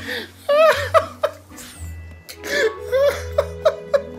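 Bursts of high-pitched laughter over a steady background music track, in two runs: one early, and a longer one in the second half.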